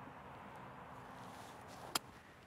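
Golf club, its face laid wide open, striking a ball off the grass for a flop shot: one short, sharp click near the end, over faint outdoor hiss.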